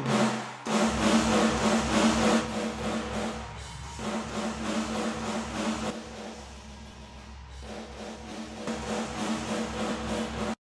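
Room-microphone channels of a sampled virtual drum kit playing a metal groove through a heavy compression preset, giving a big, exploding room sound. The playback breaks off briefly just after the start, and the level drops for several seconds in the middle before rising again near the end.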